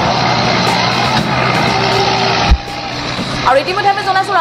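Loud, noisy outdoor field audio of a vehicle engine running among voices, cut off abruptly with a thump about two and a half seconds in. A voice starts speaking near the end.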